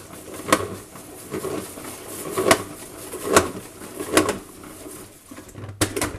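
Plastic salad spinner spun by hand as fast as it will go, spin-drying wet compression stockings: a whirring broken by a sharp plastic clack about once a second, a creepy noise.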